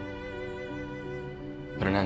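Slow, sad background music of held violin and cello notes. Near the end a brief, louder voice sound breaks in over the music.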